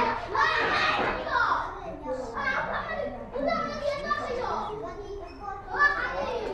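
Several children talking at once, an overlapping classroom chatter of young voices, with one voice briefly louder near the end.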